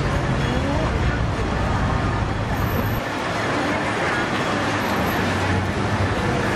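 Busy roadside ambience: steady road traffic with people's voices mixed in.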